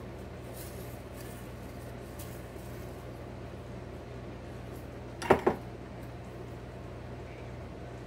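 Paper slips rustling and faint clicks against glass as a hand rummages in a glass jar, over a steady low hum. About five seconds in comes a short two-part vocal sound.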